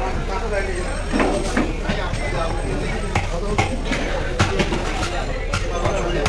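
Indistinct voices chattering in the background, with scattered sharp knocks and scrapes of a long knife cutting through a large fish on a wooden chopping block.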